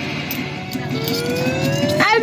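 Claw machine's electronic sounds as the claw drops and lifts: a faint steady pulsing pattern, then a single tone that rises slowly from about halfway through.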